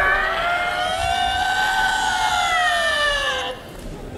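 A single long, high wailing note in a live free jazz improvisation, its pitch slowly rising and then falling before it stops shortly before the end; a lower held note fades out just after the start.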